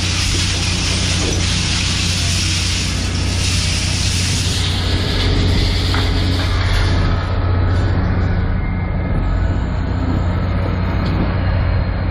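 Engine and hydraulic crane of a 5-ton grapple truck working as the grapple lifts a tangle of scrap wire: a steady low engine hum throughout, with a high hiss that eases off about halfway through.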